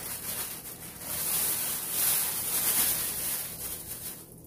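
Thin plastic bag rustling and crinkling as lettuce is pulled out of it. It is a hissy crackle that swells from about a second in and eases off near the end.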